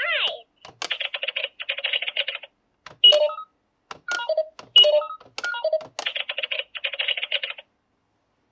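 Toy cash register's small electronic speaker playing short beeps as its keys are clicked, with a stretch of rapid electronic chattering before and after the beeps. The sound cuts off suddenly near the end.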